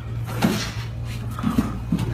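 Two men grappling on gym mats: a thud about half a second in and a few smaller knocks and scuffs near the end as they go down to the floor in a takedown.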